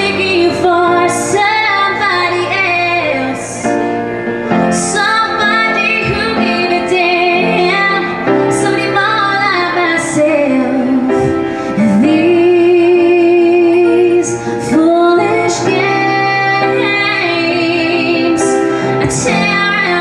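A woman singing a ballad live over her own piano accompaniment, with long held notes that waver in vibrato, the longest near the middle.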